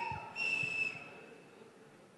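Audience whistling: a short, shrill whistle about half a second in, held briefly at one high pitch, then fading into faint hall noise.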